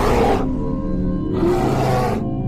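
Bear roars over steady music: one roar fades out about half a second in, and another comes about a second and a half in.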